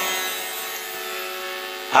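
Accompanying instrument holding a steady sustained chord of several tones, fading slightly, in a break between sung phrases.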